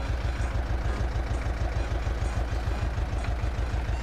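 Tractor engine idling with a steady low, evenly pulsing throb.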